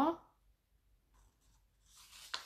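A woman's reading voice trails off at the very start, then near silence. Near the end comes a faint rustle of a paper book page being taken by hand to turn.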